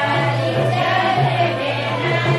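Music with a group of voices singing together, loud and steady throughout.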